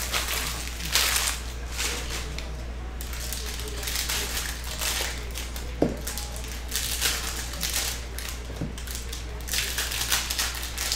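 Foil trading-card packs crinkling and tearing as they are handled and opened, with cards sliding and shuffling, in a run of irregular rustles and a sharper tap about six seconds in, over a steady low hum.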